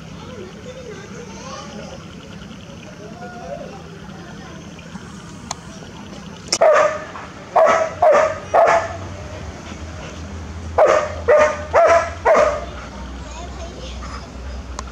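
Two runs of four short, loud animal calls, each about half a second apart, over faint distant voices and a low hum.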